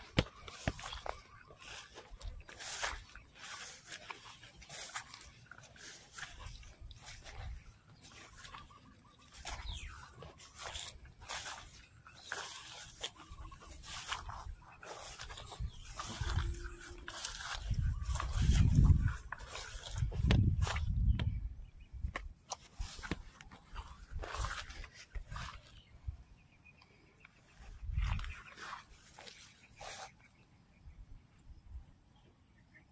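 Rice plants rustling and crackling against the microphone as the phone is pushed through a paddy, with a steady high-pitched buzz behind and a few deep low rumbles from wind or handling about two-thirds of the way in.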